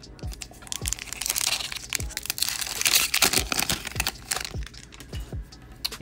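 A hockey card pack's shiny wrapper crinkling and being torn open by hand, with dense crackle and a longer stretch of tearing and rustling in the middle, over background music with a steady beat.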